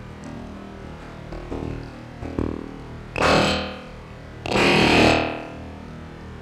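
KOMA Field Kit electro-acoustic modular played through the Field Kit FX effects processor: a steady distorted drone with a few small clicks, then two loud noisy swells about three and four and a half seconds in, each falling in pitch as it dies away.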